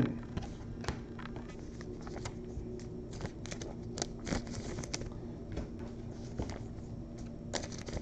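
Faint scattered clicks and crinkles of trading cards and foil wrappers being handled, over a low steady hum.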